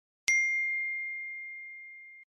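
A single ding sound effect, struck once about a quarter second in and then ringing on one high tone that fades slowly over nearly two seconds.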